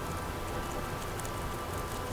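Paintbrush dabbing resin into a strip of fiberglass mat to saturate it, a steady, even noise, with faint background music.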